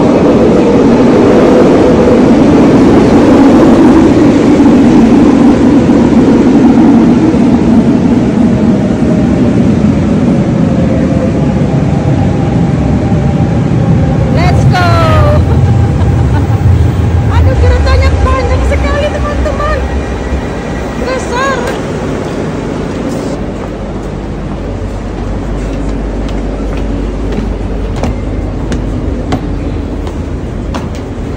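RER A double-deck electric train pulling into an underground station: a loud rumble that drops in pitch as it slows, with high gliding whines from about halfway in, then a quieter steady hum once it has stopped.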